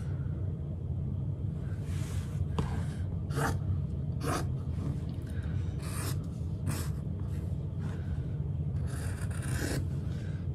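Fabric scissors cutting through fabric on a cutting mat: several short, irregularly spaced snips with some rustling of the cloth, over a steady low hum.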